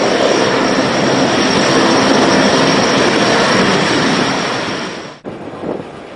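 Jet aircraft engines running steadily, a loud rush with a high whine, cut off abruptly about five seconds in, leaving quieter background sound.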